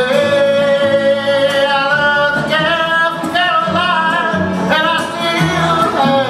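Live bluegrass band: a male voice sings, holding one long note with vibrato at the start and then shorter sung phrases, over acoustic guitar, banjo, upright bass and a resonator guitar.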